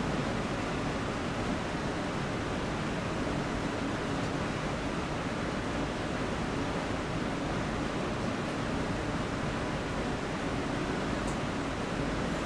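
Steady, even hiss of room tone with no speech, and a couple of faint clicks near the end.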